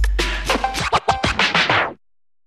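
The podcast's theme music, a beat with turntable-style scratching, playing loud and then cutting off abruptly near the end.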